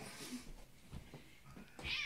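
A domestic cat meows once near the end, a short pitched call, after some faint rustling.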